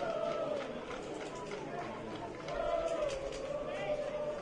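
Open-air football stadium ambience of distant voices: players and supporters calling out, with long, drawn-out calls that waver in pitch.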